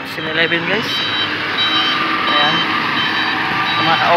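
Vehicle noise on the road with a repeating two-tone electronic beeping, short high beeps alternating between two pitches about three times a second, starting about a second in.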